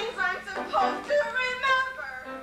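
A performer's voice singing or vocalizing in a stage musical, the pitch moving and breaking between short phrases, over a steady low electrical hum.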